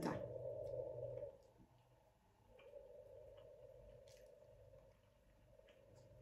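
Faint soft squishing and small ticks of sticky rice being kneaded into a ball between the fingers, over a low steady hum that fades out for about a second near the middle and then returns.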